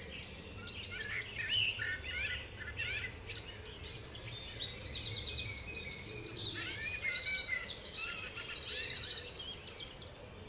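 Birds singing and chirping in open country, several overlapping calls with short gliding notes, turning to rapid trilled phrases from about five seconds in, over a faint low rumble of outdoor noise.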